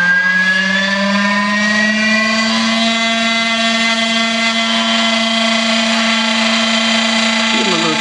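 Electric motor whine as the disk spins up: a steady multi-tone hum that rises in pitch over the first two to three seconds, then holds at a constant speed.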